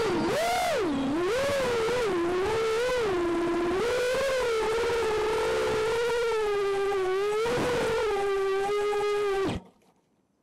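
Five-inch FPV quadcopter's Emax RS2205 2300kv motors and Gemfan 5152 props whining at hover, the pitch wobbling up and down with throttle corrections and then holding steadier. The whine cuts off abruptly near the end.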